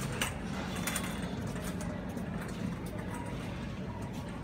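Supermarket background noise: a steady low hum with scattered sharp clicks and rattles and faint distant voices.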